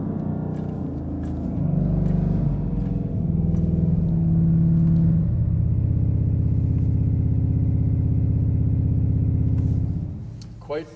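Pipe organ's 32-foot pedal reed stop, produced digitally through speakers, sounding a few very low pedal notes in turn. The last, a held low note of about five seconds, has a slow pulsing in which the individual vibrations of the reed tongue can be felt. It cuts off near the end.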